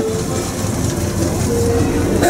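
Low, steady rumble of a slow-moving Main Street vehicle passing close by, with a steady tone coming in near the end.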